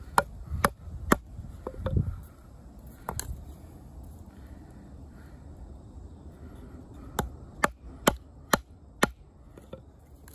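Sharp chopping knocks of a 440C steel fixed-blade knife biting into a green stick to cut a V-notch: a few strikes in the first three seconds, a pause, then five evenly spaced strikes about two a second near the end.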